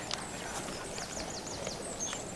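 Stones knocking together as rocks are handled, with a sharp knock at the start and fainter knocks after. A bird chirps a quick run of about five high notes around the middle.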